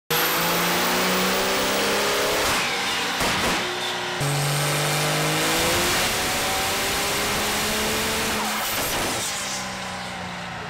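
Cummins turbo-diesel in a Dodge Ram pickup running hard under load on a chassis dyno, its pitch climbing slowly through each pull, with a thin high whistle rising above the engine. The sound breaks off and starts again sharply about four seconds in.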